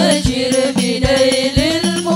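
A group of women singing sholawat (Islamic devotional song) together into microphones, the melody wavering with ornamented turns, over a steady beat of low drum strokes.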